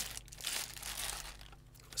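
Clear plastic bag crinkling as a phone charging dock is pulled out of it, dying away near the end.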